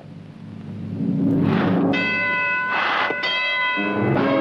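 A bell-like signal ringing as a steady, high, pitched ring for about two seconds in the second half, broken by a noisy swell partway. It is preceded by a rising rumble.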